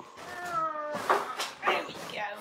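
A bulldog whining once, a drawn-out, slightly falling whine lasting under a second, followed by a few short, noisy snuffling sounds.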